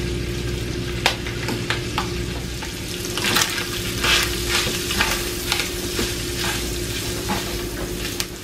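Diced ham with chopped green onions and thyme sizzling in bacon grease in a skillet, while a spatula stirs and scrapes across the pan in irregular strokes, busiest in the middle. A steady low hum runs underneath.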